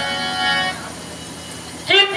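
Harmonium holding one steady chord for under a second, then dropping to a quieter sustain. A voice comes in singing just before the end.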